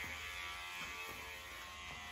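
Electric hair clippers running with a steady buzz while being passed through a head of hair.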